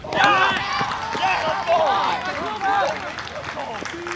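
Several voices shouting and cheering at once, overlapping, a reaction to a diving catch in the outfield; loudest in the first two seconds, then fading.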